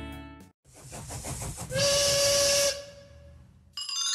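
Steam locomotive sound effect: a run of chuffs, then a single whistle blast of about a second over hissing steam, fading away.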